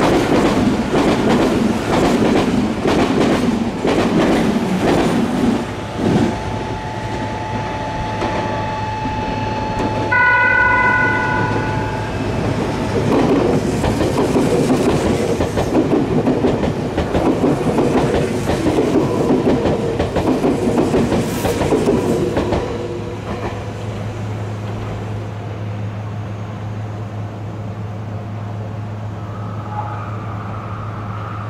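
Meitetsu 1700 series electric train passing through the station, its wheels clattering over the rail joints. A train horn sounds for about two seconds, ten seconds in. The clatter fades after about 22 seconds, leaving a steady low hum.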